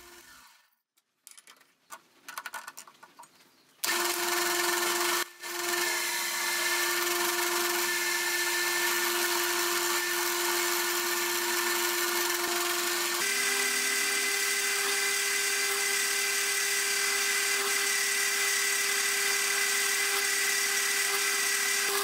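After a few near-silent seconds, a metal lathe starts running steadily with a steel bar being cut, a steady hum with a high whine. About nine seconds later the pitch steps slightly higher as a twist drill bores into the end of the bar.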